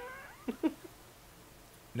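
A short high call that falls in pitch, then two brief soft sounds about half a second in.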